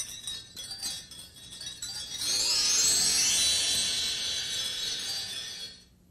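Shimmering, chime-like magic sound effect: many high ringing tones that start with a sudden strike, swell into a rising sweep about two seconds in, and cut off near the end. It is the cue for a magical transformation, a puppet imagining itself into another's place.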